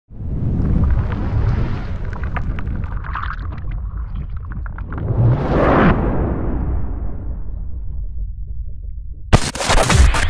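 Cinematic logo-reveal sound effects: a deep rumble, with a rising whoosh that swells and cuts off sharply about six seconds in, and a sharp hit near the end.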